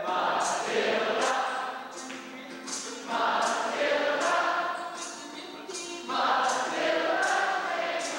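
Unaccompanied barbershop close-harmony singing by a small group of male voices, chords shifting from phrase to phrase, with crisp hissing consonants and brief lulls between phrases.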